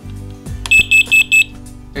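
FireAngel FA3322 carbon monoxide alarm's sounder giving a set of four short, high beeps in quick succession, starting a little under a second in, as the alarm runs its self-test after the test button is pressed. Background music plays underneath.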